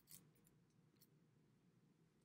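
Near silence, with a few very faint short clicks near the start and about a second in.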